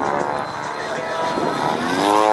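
Align T-Rex 700 radio-controlled helicopter in 3D aerobatic flight, its rotor and drive giving a steady whine.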